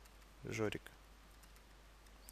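One short spoken word, followed by a few faint, sharp clicks of a stylus tapping and writing on a tablet.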